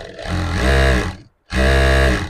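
Jack F4 direct-drive lockstitch sewing machine running in short bursts of about a second each, with a hum whose pitch rises and falls as it speeds up and slows down, and a brief stop about one and a half seconds in.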